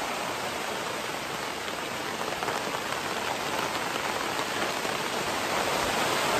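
Steady rain falling on a fabric screen-tent canopy overhead, a dense, even hiss that grows slightly louder toward the end.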